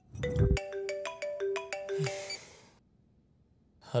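Mobile phone ringtone playing a melody of short stepped notes, with a low thud as it begins. It cuts off about two and a half seconds in.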